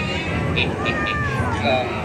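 Recorded cat meows from the ride's animatronic cats, several gliding calls with a few short high chirps about half a second in, playing through the attraction's speakers over a man's voice and background music.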